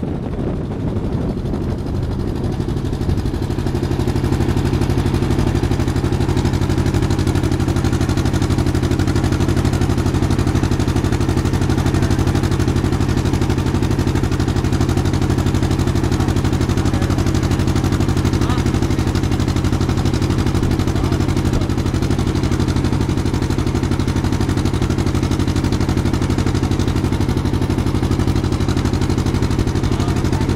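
Motor boat's engine running at a steady, even speed, a low drone that settles in about three seconds in, over wind and water noise.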